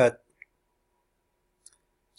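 The tail of a man's spoken word, then near silence broken by two faint, brief clicks: one about half a second in and one near the end.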